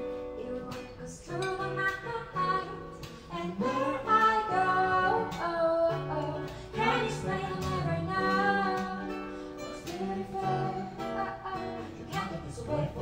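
A steel-string acoustic guitar played as accompaniment while a woman sings with it, her voice swelling louder through the middle.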